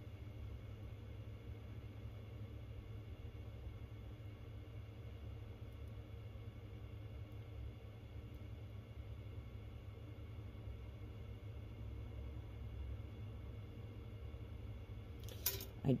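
Quiet room tone with a steady low hum and no distinct handling sounds.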